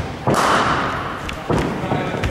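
Cricket ball struck by a bat in an indoor sports hall: one loud, sharp knock with a hall echo, then a second, shorter knock about a second later.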